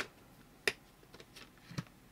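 Clear plastic specimen collection box being handled and its latch snapped open: a few sharp plastic clicks, the loudest at the start and another just under a second in, then lighter ticks and one more click near the end.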